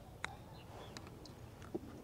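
Golf club striking the ball on a short chip shot: one sharp click about a quarter second in, followed by a couple of fainter ticks over a quiet outdoor background.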